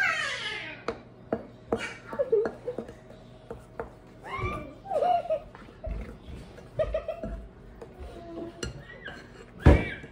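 Girls giggling and laughing, opening with a short squeal that falls in pitch, over spatulas scraping and clicking against a glass mixing bowl of thick batter; a sharp knock near the end.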